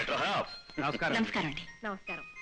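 A man speaking in film dialogue, in short phrases with brief pauses, over faint background music.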